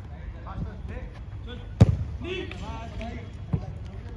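A football kicked on artificial turf: one sharp, loud thud about two seconds in, then a lighter kick near the end, with players' voices in the background.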